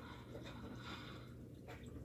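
Faint room tone with a steady low hum and soft breathing.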